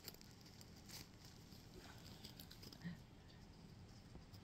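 Near silence with a few faint, soft ticks and taps, about one second in and again near three seconds in, from makeup items being handled.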